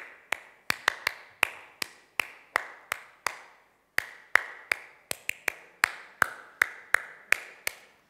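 One person clapping flamenco palmas in a fandango rhythm: sharp single hand claps about three a second, with some quicker doubled claps and a short break a little before halfway. Each clap rings briefly in the hall.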